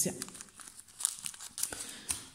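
Small plastic zip-lock bag of beads crinkling as it is handled, in short scattered crackles.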